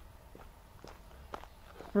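Faint footsteps of a person walking at a steady pace, about two steps a second.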